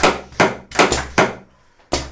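Pneumatic cylinders and valves on an electropneumatic training panel cycling under compressed air. They give a quick series of sharp knocks, each with a short trailing hiss, about two and a half a second. The knocks stop about 1.3 seconds in, and one more comes near the end.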